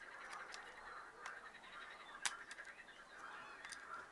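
Faint handling noise of fingers on a small plastic camcorder body, with a few light clicks as the port cover over its HDMI and USB sockets is pried open. The sharpest click comes a little past halfway.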